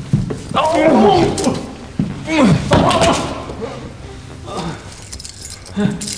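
A person's wordless vocal sounds, two stretches of about a second each with pitch sliding up and down, alongside a light metallic jingling.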